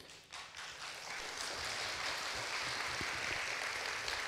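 Audience applauding: clapping that starts up just after the start and swells within a second to a steady ovation.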